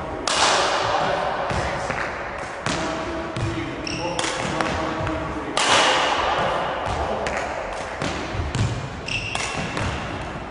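Badminton rackets striking shuttlecocks and feet landing on the court in a reverberant sports hall: a series of sharp hits every second or two, each ringing on in the hall, with brief high squeaks of court shoes twice.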